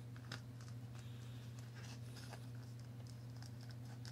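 Faint, scattered clicks and rubbing of hard plastic toy parts handled by fingers as the energy-ball effect piece is fitted onto a plastic action-figure motorcycle, over a steady low hum.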